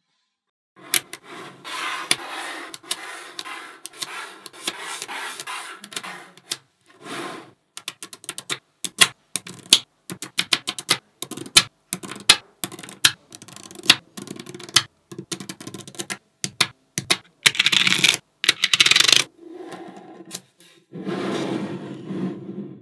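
Small magnetic balls clicking and snapping together in quick, irregular clicks, with stretches of rattling scrape as rows of balls are rolled and pressed into a flat sheet. It starts about a second in.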